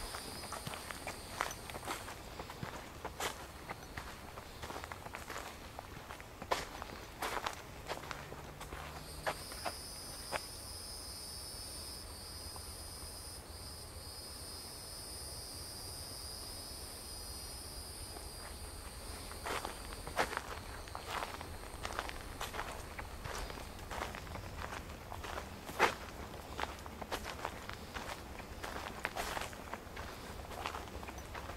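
Footsteps crunching on a sandy dirt trail at a walking pace, thinning out to a pause in the middle. A steady high insect buzz rises in about a third of the way in and fades out past halfway.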